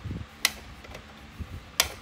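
Two sharp plastic clicks, about a second and a half apart, the second a little longer, as the small plastic cover on the end of a rack-mount power strip is pried and snapped open by hand, with faint handling noise between.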